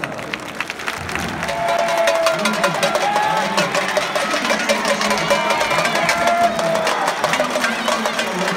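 Football supporters in the stands chanting together over many sharp beats, swelling louder about a second and a half in.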